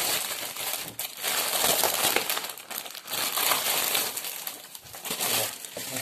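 Plastic shrink-wrap being torn and crumpled off a magazine: dense crackling and crinkling that thins out near the end.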